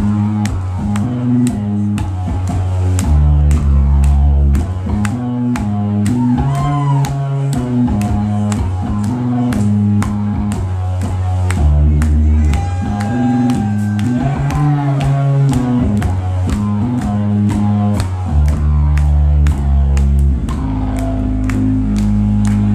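Stoner/doom rock band playing live: a loud, low electric guitar and bass riff over a drum kit keeping a steady beat of cymbal and snare hits.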